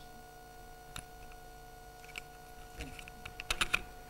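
Keys and buttons of a laptop at a lectern being pressed: a few scattered clicks, then a quick flurry of louder clicks near the end, over a faint steady hum.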